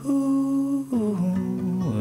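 A singer holding a long wordless "ooh" on one note for about a second, then sliding down through a few lower notes, over acoustic guitar accompaniment.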